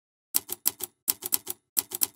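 Typewriter key strikes as a sound effect: about ten sharp clacks in quick runs of three or four, starting about a third of a second in.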